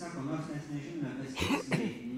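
A man coughs once, about one and a half seconds in, into a close microphone. Quiet speech runs under it.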